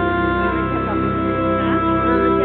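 Live stage music over a hall's sound system: long held organ-like chords with a wavering, sliding melody line coming in over them.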